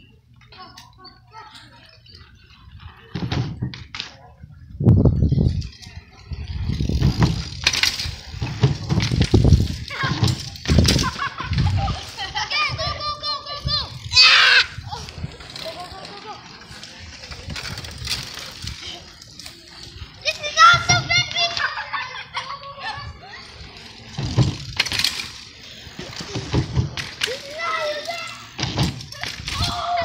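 Children talking and calling out to one another, with low rumbles and clicks in between, mostly in the first third.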